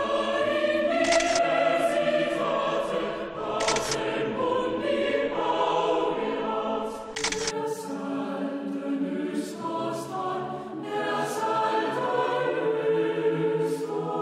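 Choral music: a choir singing sustained chords that change slowly, with several sharp clicks laid over it, loudest in the first half.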